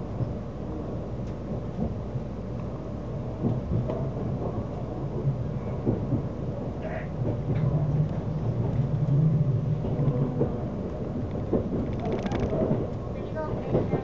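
Running noise of a limited express train heard from inside the passenger car: a steady low rumble of wheels on rail with scattered clicks and knocks, swelling a little louder around the middle.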